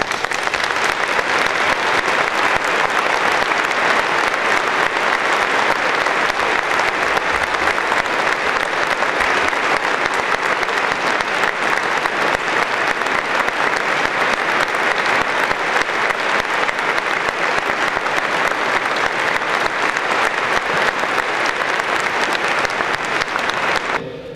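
Steady applause from a large audience clapping.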